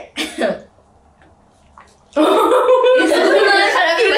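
A person gargling a mouthful of water: a loud, wavering gurgle that starts suddenly about two seconds in and keeps going, after a brief burst of voice at the start.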